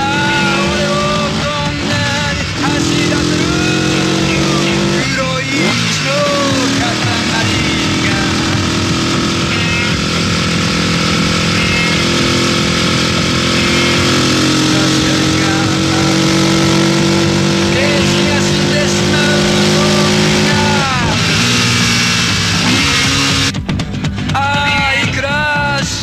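Several motorcycle engines running and revving together at once, their pitches slowly rising and falling, with voices calling out over them a few times.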